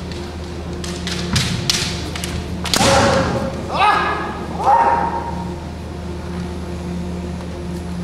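Kendo fencers' kiai shouts: three loud cries between about three and five seconds in. They follow a quick run of sharp clacks and thuds, about a second and a half in, from bamboo shinai clashing and feet stamping on the wooden floor.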